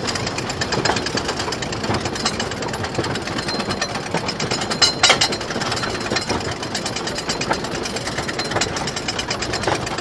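Philadelphia Toboggan wooden roller coaster train (Thunderhawk) being hauled up its chain lift hill: a rapid, even clacking of the lift chain and anti-rollback dogs, with one louder clunk about halfway through.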